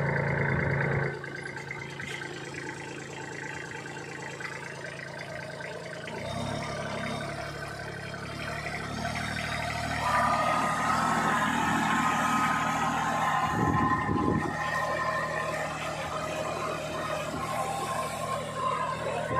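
Kubota B2441 compact tractor's three-cylinder diesel engine running under load as it pulls a turmeric-digging implement through the soil. The engine gets louder about six seconds in, and a higher whine joins it about ten seconds in.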